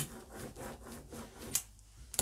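Light handling noises on a work table: a sharp tap at the start, soft rubbing through the middle, and another tap about a second and a half in.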